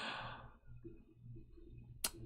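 A person's sigh or breathy exhale into the microphone, fading out within about half a second, followed by a faint steady hum.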